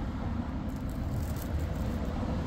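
Street traffic: cars going by, heard as a steady low road noise.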